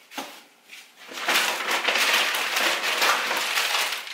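Plastic packaging crinkling and rustling as it is handled, starting about a second in and going on without a break.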